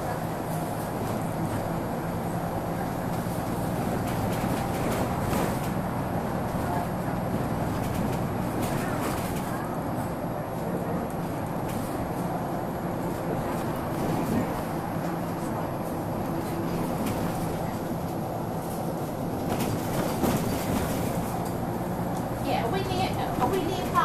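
Interior of a Wright Solar single-deck bus on the move: the diesel engine runs steadily through its ZF automatic gearbox, with road noise and a few brief knocks and rattles from the doors and fittings.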